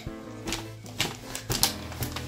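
Plastic packaging of a sheet set crinkling, with a few sharp crackles and clicks as it is pulled open, over steady background music.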